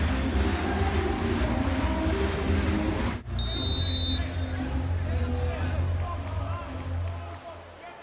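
Arena crowd noise over music with a steady low bass. The sound breaks off sharply about three seconds in, and a short, high, steady whistle follows: the referee's whistle before a serve.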